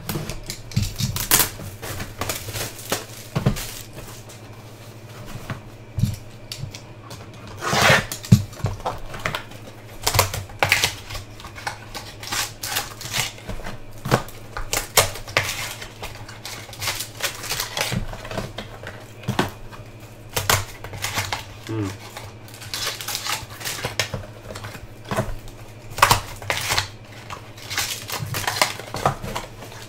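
A box of trading cards being opened and its packs handled by hand: an irregular run of light clicks, taps and rustles of cardboard and packaging, with a slightly longer scraping noise about eight seconds in. A steady low hum sits underneath.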